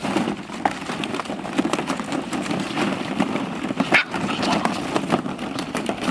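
Hollow plastic ball-pit balls clattering in a plastic paddling pool as puppies scramble through them: many quick, irregular clicks over a steady low rumble.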